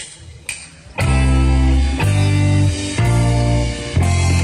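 The last two clicks of a drumstick count-in, half a second apart, then a rock band comes in together about a second in: electric guitars, bass guitar and drums playing loud held chords that change about once a second.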